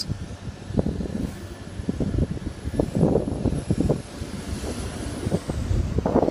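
Class 175 diesel multiple unit pulling away under power: the rumble of its underfloor diesel engines, ragged and uneven, surging about three seconds in and again near the end as the train draws close.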